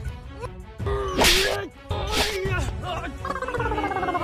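Comedy sound effects over background music: two sharp swishes about a second apart, then a tone stepping down in pitch near the end.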